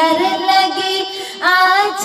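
A high, young-sounding voice singing an Urdu naat, drawing out a long melismatic note, then taking a short breath about a second and a half in and starting the next phrase on a rising note.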